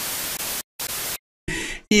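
TV static sound effect: hissing white noise in three short bursts, the last one thinner and cutting off just before speech begins.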